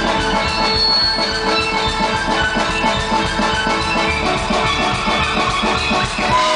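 Live band music: a violin lead over electric guitar, keyboard and drums, with a steady beat.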